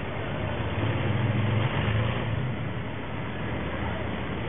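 Street traffic: a motor vehicle's engine passing, its low hum swelling from about a second in and fading after about two and a half seconds.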